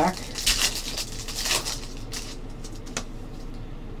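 A foil trading-card pack crinkling as it is torn open, in a few rustling bursts during the first two seconds or so, then quieter handling of the cards.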